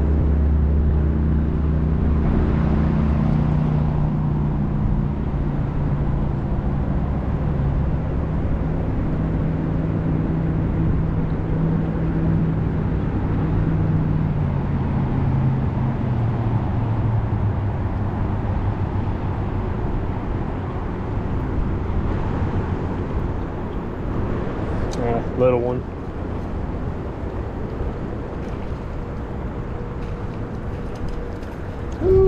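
Low, steady drone of a passing motor vehicle's engine over a rumble of traffic, its pitch sinking slowly as it goes by. A short pitched call cuts in near the end.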